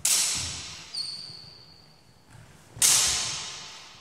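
Steel longsword blades clashing: a loud clash at the start and another just before three seconds, with a lighter contact about a second in that leaves the blade ringing with a high tone. Each clash echoes in a large hall.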